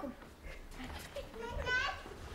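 A child's voice on stage: a short, high-pitched call near the end, over a low rumble.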